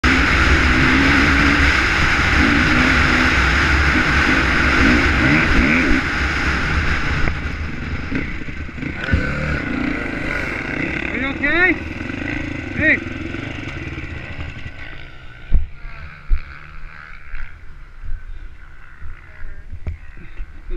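Dirt bike engine running at speed with wind rushing past the helmet-mounted camera, then easing off as the bike slows to a stop and runs on at low speed. Two sharp knocks come a few seconds after it stops.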